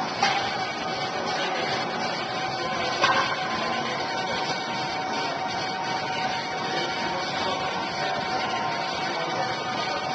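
Steady background noise with faint music, broken by two short knocks: one just after the start and one about three seconds in.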